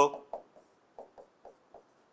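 Marker pen writing on a board: a series of short, faint strokes as a line of an equation is written out.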